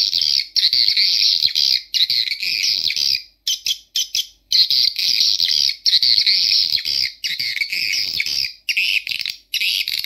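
Recorded swiftlet calls played through Audax AX-61 tweeters: dense, high-pitched twittering in bursts of one to two seconds, with short breaks between them.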